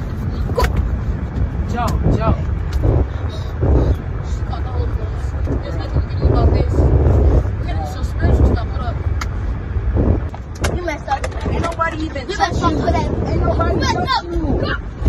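Scuffling inside a car cabin: bodies climbing and bumping over the seats, with scattered knocks and wordless shouts and yelps, over a steady low rumble.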